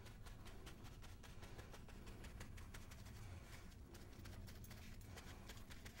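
Faint, soft, irregular patting and dabbing of a crumpled paper towel against a silver-leafed lamp base as antique glaze is wiped off, over a low room hum.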